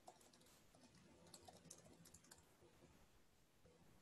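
Very faint computer keyboard typing: a short run of key clicks between about one and two and a half seconds in, otherwise near silence.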